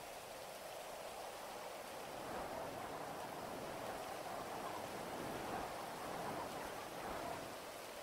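Faint, steady rain ambience that swells slightly in the middle.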